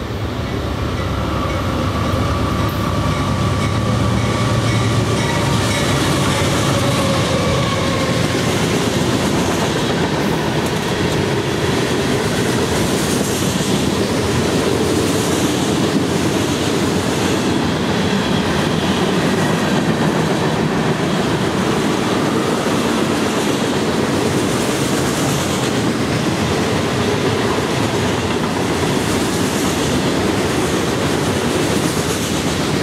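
CSX freight train passing close by, led by two GE C40-8W diesel locomotives whose engine rumble swells over the first few seconds. It is followed by a long string of covered hopper cars rolling past with a steady rumble and clickety-clack of wheels on the rails.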